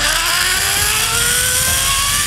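Zip line trolley running along its cable at speed: a pulley whine that climbs steadily in pitch over a loud rushing hiss.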